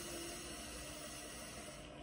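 A person's deep cleansing in-breath, a steady airy hiss, cutting off near the end as the breath is held at the top.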